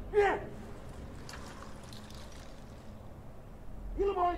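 A single short shouted drill command right at the start, falling in pitch, then a steady low outdoor rumble and hiss with faint rustling as the ranks of recruits raise their hands to salute.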